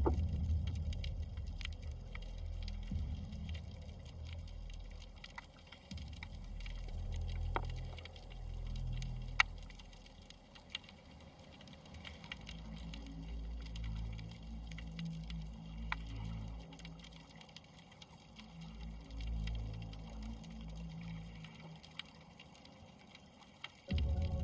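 Underwater sound picked up by a snorkeler's camera: a muffled, wavering low rumble of moving water with scattered faint clicks.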